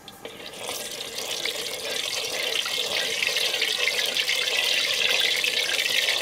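Lemongrass frying in hot oil in a wok, sizzling; the sizzle swells from about half a second in, then holds steady and loud.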